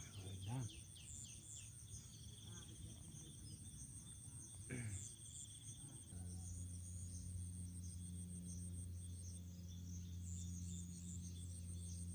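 Insects chirring steadily at a high pitch over a faint outdoor background. A low steady hum comes in about halfway through and holds.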